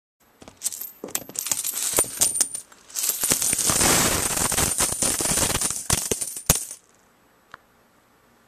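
A handful of mixed coins, mostly pennies, dropped onto a surface: a few scattered clinks first, then a dense pour of coins clattering and jingling for about four seconds, ending with a couple of last clinks.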